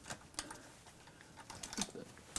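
A valve spring compressor tool being handled and lifted off the cylinder head: a few light, scattered clicks of the tool against the valve gear.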